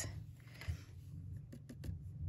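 Faint rustle of white embossing powder sliding off a stamped watercolor card and of paper being handled, with a few light clicks near the end as the excess is shaken off.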